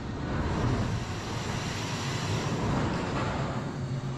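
Steady rumble and noise of a Bolliger & Mabillard floorless roller coaster train at its station, picked up by an on-ride camera.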